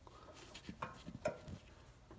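A few faint, light ticks and scrapes of a wooden pencil being worked and wiggled in a small drilled hole to mark a vertical line.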